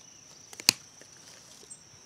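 A single sharp snip of bonsai branch cutters severing a ficus branch about two-thirds of a second in, with a faint click just before it. A steady high-pitched insect drone runs underneath.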